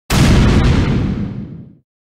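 Explosion-style boom sound effect on a title card: a sudden loud hit that dies away over about a second and a half, its hiss fading before its rumble.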